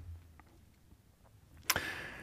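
A quiet pause in a man's speech, then about three-quarters of the way through a sharp mouth click and a short breath in.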